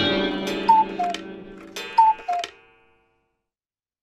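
Cartoon soundtrack sound effects: a ringing hit fades out while two descending two-note tick-tock figures sound about a second apart. All sound stops about three seconds in.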